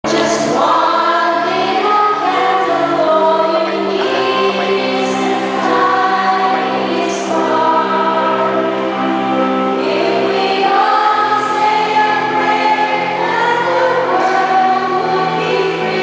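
Church choir singing a hymn in slow, long-held phrases.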